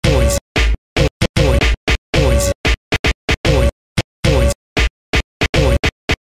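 DJ turntable scratching of a record sample, chopped by the crossfader into about twenty short stabs with dead silence between them. Many of the stabs sweep up or down in pitch as the record is pushed and pulled.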